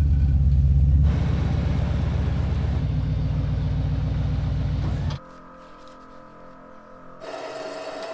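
A large off-road wrecker truck's engine running with a deep, steady rumble, loudest in the first second, that stops abruptly about five seconds in, leaving a much quieter background.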